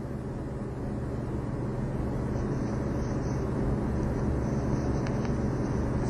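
Steady low electrical hum under a hiss, slowly getting louder, with a couple of faint clicks about five seconds in.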